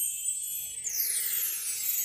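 Cartoon electronic zap effect of a light-beam machine firing: a shimmering high tone that glides steadily downward over about a second, over a low steady hum.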